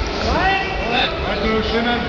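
Raised voices calling out over a steady low rumble of background noise.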